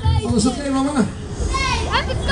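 Young voices calling out, with a high rising shout near the end, over fairground dance music whose bass beat drops out for most of the moment.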